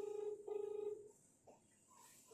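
Telephone ringback tone: a double ring of two short, buzzy beeps about half a second each with a brief gap, the ringing heard on an outgoing call while it waits to be answered.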